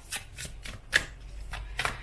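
A tarot deck being shuffled by hand: an irregular run of short card flicks and slaps, about four a second.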